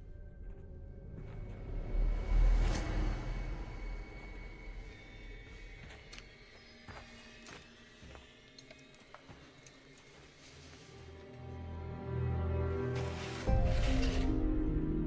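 Suspenseful film score of sustained tones, swelling about two seconds in. Scattered sharp clicks come in the middle, and a deep rumbling rise builds near the end.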